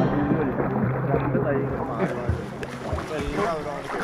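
Many voices of people in the water talking and calling over one another, with water sloshing around them.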